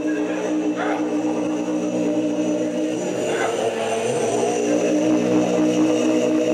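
Live rock band sounding a sustained, droning chord: steady held notes with no clear beat, and a few faint sliding tones over the top.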